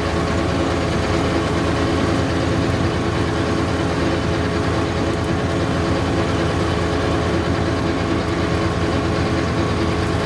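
John Deere 1025R subcompact tractor's three-cylinder diesel running steadily at working speed while driving a rear rotary cutter (brush hog) through brush and weeds.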